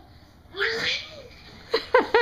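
A toddler's voice: a short breathy squeal about half a second in, then quick high-pitched squeals near the end.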